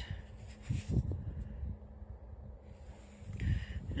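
Low wind rumble on the microphone, with a soft rustle about a second in and another near the end.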